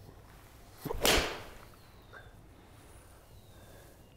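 Edel 54-degree V-grind wedge striking a golf ball: one sharp crack about a second in.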